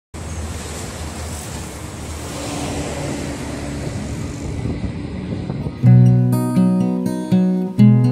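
Steady road-traffic noise for about six seconds, then a steel-string acoustic guitar starts with loud strummed chords.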